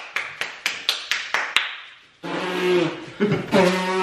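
Quick, even taps or slaps, about four a second, that die away before the two-second mark. About two seconds in, a person makes a loud, drawn-out wordless vocal noise held at a steady pitch, which sounds like an elephant.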